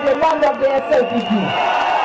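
A voice speaking into a microphone, carried over a public-address system, with crowd noise behind it; from about a second and a half in the sound turns into a denser, steadier din.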